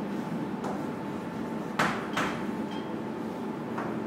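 Chalk writing on a chalkboard: a few short taps and scrapes of the chalk, the loudest a little under two seconds in, over a steady hiss.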